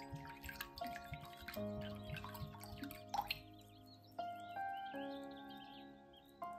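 Liquid poured from a small glass bottle trickling and dripping into a ceramic bowl, stopping about three seconds in, over soft background music of held, slowly changing notes.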